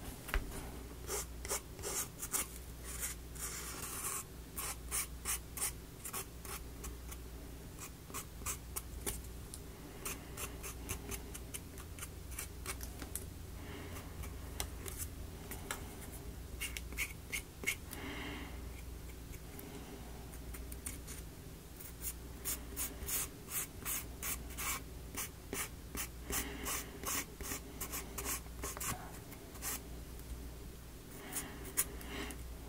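A marker tip scratching over a small wooden model piece in quick, irregular short strokes, the way trim is coloured in, over a faint steady low hum.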